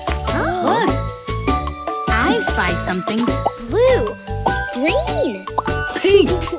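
Children's cartoon song: bouncy backing music with a steady bass beat and tinkling bell-like notes, under cartoon children's voices calling out short exclamations such as colour names ("Blue! Green! Pink!").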